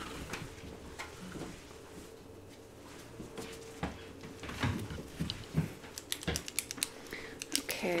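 Soft handling noises from someone searching for and picking up a pen: scattered light knocks and rustles, then a quick run of sharp clicks near the end, over a faint steady hum.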